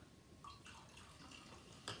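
Faint trickle and drips of vinegar poured from a small glass into a glass of baking-soda water, with a few light ticks and one sharper click near the end.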